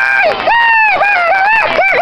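A person shouting excitedly at a high pitch, close to the microphone, in a string of short rising and falling calls, in reaction to a goalkeeper's save.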